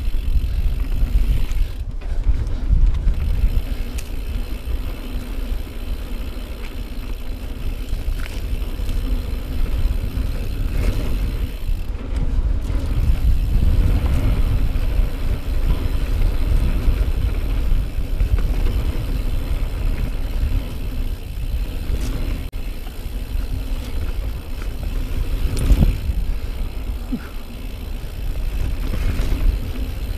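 Riding noise from a 2018 Norco Range mountain bike descending a dirt singletrack: tyres rolling over dirt and the bike rattling over bumps, with a few sharp knocks. A heavy, constant low wind rumble on the microphone runs underneath.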